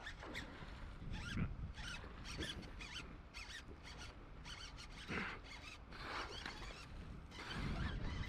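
Baitcasting reel and rod being worked while fighting a hooked bass: a run of quiet, irregular rasping clicks from the reel, over a low wind rumble on the microphone.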